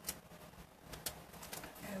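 Three short, sharp clicks of metal craft tweezers handling a glue dot, with a voice starting to speak near the end.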